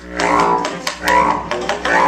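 Free-improvised jazz from a quartet of bass clarinet, trumpet, tenor saxophone and cello, playing dense pitched lines that swell twice over a steady low drone, with sharp clicks between.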